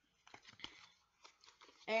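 Tarot cards and their box being handled: a scatter of soft clicks and light rustles.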